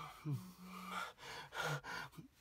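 A frightened man's shaky breathing: several short gasping breaths with a brief hummed 'mm' in the middle, no words.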